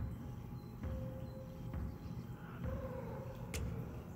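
Low, steady hum and rumble of reef aquarium equipment (pumps and water circulation), with a faint steady tone over it. A single sharp click sounds about three and a half seconds in.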